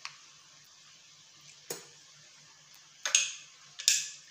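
Blender jar and utensil knocking and scraping as blended pepper paste is emptied into a bowl: a small click, a single knock a little before two seconds, then louder clattering scrapes about three seconds in and again just before the end, with quiet in between.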